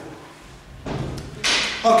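A quiet pause in a large room, broken by a single dull thump about a second and a half in. A man's voice starts just before the end.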